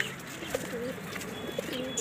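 Domestic pigeon cooing: low, wavering coos repeated through the moment.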